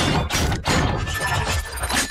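Loud, noisy outro sound effect for an animated end card: a rush of crunching noise over a deep rumble, with a brief dip about half a second in.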